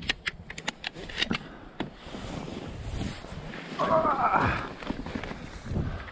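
Shotgun being reloaded by hand: a quick run of small metallic clicks as shells are pushed into the magazine. Then rustling of the blind and straw, with a brief voice-like call about four seconds in.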